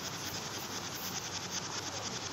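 Black spatula stirring and scraping a coconut and milk-powder mixture against the kadhai, a steady scratchy rasp.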